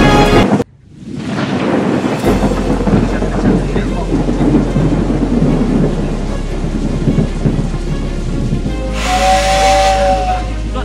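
Thunderstorm sound effect, rumbling thunder and rain, over a low sustained bass note in a soundtrack. It comes in just after music cuts off abruptly about half a second in, and a short pitched tone joins near the end.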